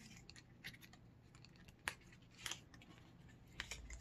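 Faint, scattered clicks and scrapes of a small cardboard lip-gloss box being handled and opened.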